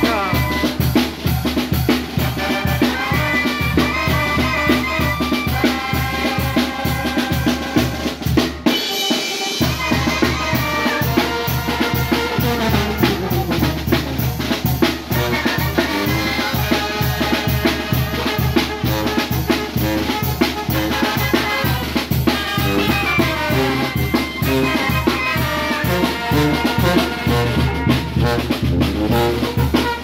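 A Mexican banda of clarinets, trumpet, sousaphone, bass drum and cymbals playing together live on a steady beat. The low notes drop out for a moment about nine seconds in.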